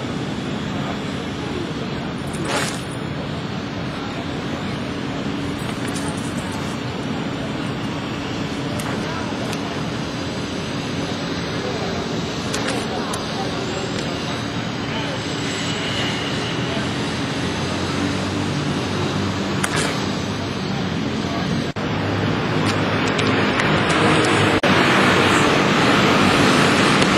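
Steady city background noise of traffic with indistinct voices, growing louder near the end, and a few faint knocks.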